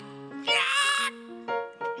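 A drawn-out, wavering 'yeah' in a comic put-on voice, about half a second long, over background music with steady held notes.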